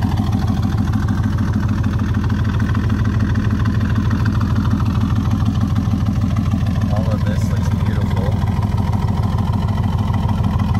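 LS7 7.0-litre V8 in a 1967 Corvette idling steadily with an even, low rumble.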